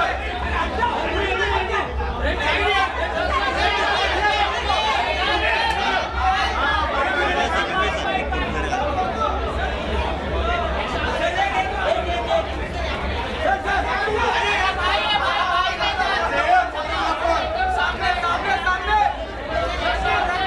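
Chatter of many overlapping voices, with no single clear speaker, over a steady low hum.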